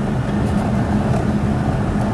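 Car driving along a dirt road, heard from inside the cabin: a steady low rumble of engine and tyres with a steady low hum.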